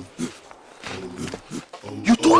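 Deep male voices giving short, low grunting calls, two of them about half a second each, one about a second in and one near the end.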